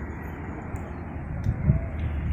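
Steady rushing wind noise on the microphone, with a low rumble underneath and a few soft knocks about one and a half seconds in.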